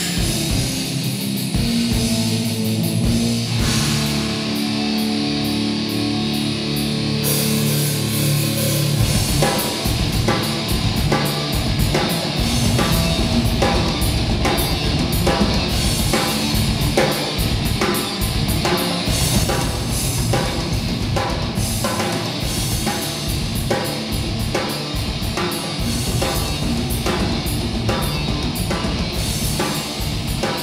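A live rock band with electric guitars and a drum kit playing. The guitars hold long chords at first, then the drums pick up a steady beat about nine seconds in.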